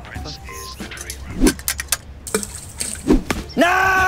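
Two dull thumps about a second and a half apart, among scattered faint clicks, then a man's loud, drawn-out shout near the end.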